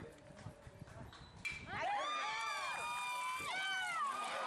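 A bat cracks against a baseball about a second and a half in. Then spectators and players shout and cheer, several voices overlapping.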